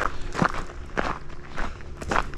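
Footsteps on a gravel trail, a step about every half second.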